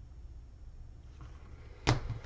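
Near the end, a single sharp plastic clack as a hard plastic card holder is set down onto a stack of other card holders. Before it, only faint low room noise.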